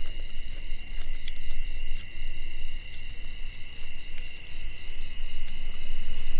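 Night insects, crickets, calling steadily: a continuous high ringing tone with a pulsing chirp about four times a second over it, and a few soft clicks.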